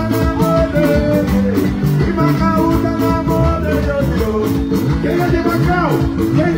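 Live Angolan band music with a steady, danceable beat: drums, bass and electric guitar playing together.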